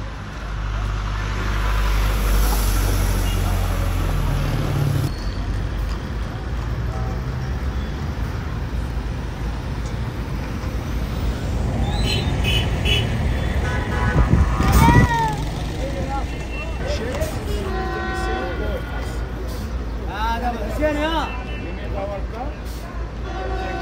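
Street traffic: an engine rumbles for the first five seconds, then car horns toot several times, with people's voices in the background.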